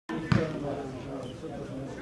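A football kicked once, a sharp thud about a third of a second in, followed by open-air pitch sound with faint distant voices.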